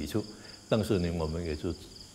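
Insects, likely crickets, chirping steadily in a high-pitched pulsing trill in the background, while a man's voice speaks briefly.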